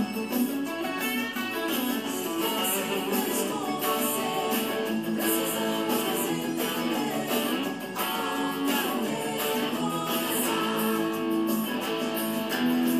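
Stratocaster-style electric guitar playing power chords in a forró rhythm, with short, evenly repeated strokes and chord changes every fraction of a second.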